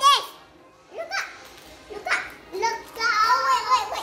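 Young children's voices, shouting and squealing excitedly in short bursts, with a longer, louder call near the end.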